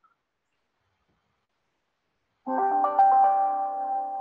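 Silence, then about two and a half seconds in a few steady musical notes sound one after another in quick succession and keep ringing, fading slowly.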